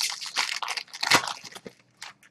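Foil wrapper of a 2014 Panini Certified Football card pack being torn open and crinkled by hand: a dense crackling that is loudest a little after a second in, then dies away.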